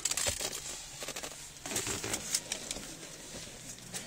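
Handling noise: scattered rustles and light clicks as the phone is moved about and brushes against things.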